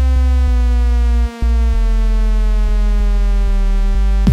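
Electronic music: a sustained buzzy synthesizer tone slowly sliding down in pitch over a heavy deep bass. Faint clicks are scattered through it, and it drops out briefly about a second and a quarter in.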